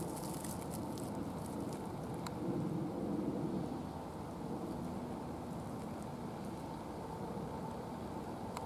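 Steady outdoor rumbling noise that swells a few seconds in, with a few faint clicks.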